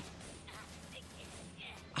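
Faint, ominous anime fight-scene sound effect played back at low volume: a steady noise-like texture with no clear pitch, which might be a sound effect or a drum played very fast.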